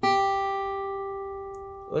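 A single note, G, on an acoustic guitar's high E string, fretted at the third fret and plucked once. It rings clearly and fades slowly.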